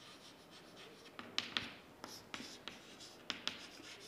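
Chalk writing on a chalkboard, quiet: short taps and scratches of the chalk strokes, coming in small clusters.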